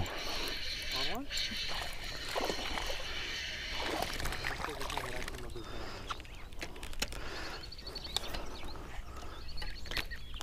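A small largemouth bass splashing at the water's surface as it is reeled in and swung out of the water on the line.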